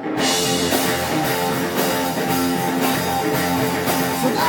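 Live rock band playing an instrumental passage without vocals: electric guitars and electric bass holding chords over a drum kit, coming in hard right at the start.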